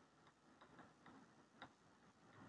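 Near silence with a few faint ticks of chalk writing on a blackboard.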